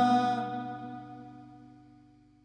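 The song's final chord ringing out on sustained instruments and fading away to silence over about two seconds.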